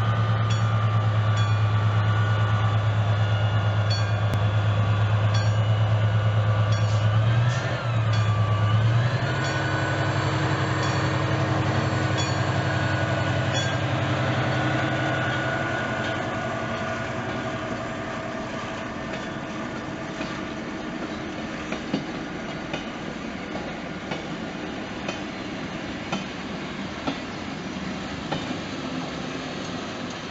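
Heritage passenger train passing a level crossing: a red diesel locomotive drones loudly as it goes by, then the string of vintage coaches rolls past, wheels clicking regularly over the rail joints, fading as the train moves away.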